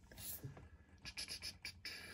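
Faint handling noises of small diecast toy cars being picked up and moved: light scratching with a run of small, quick clicks in the second half.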